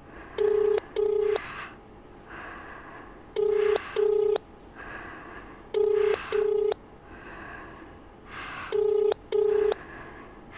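Telephone ringback tone: a low steady double ring repeated four times, about every three seconds, as a call rings out unanswered at the other end. Between the rings, laboured, heavy breathing comes roughly once a second.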